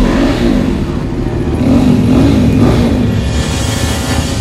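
A two-wheeler's small engine running and revving, its pitch rising and falling.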